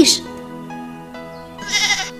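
Soft background music with held notes, then a lamb bleats once, briefly, near the end.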